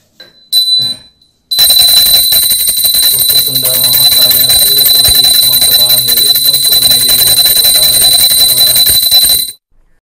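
Loud electronic news-channel jingle with a held, high, alarm-like tone over dense music. It starts about a second and a half in, after a brief loud sound, and cuts off suddenly just before the end.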